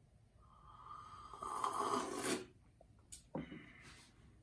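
A slurping sip of coffee from a small ceramic cup, an airy draw of about two seconds that grows louder before it stops. About a second later the cup is set down on the wooden table with a short knock.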